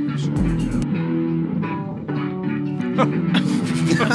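A group of bass guitars playing a groove together, with an electric guitar, in a recorded live jam.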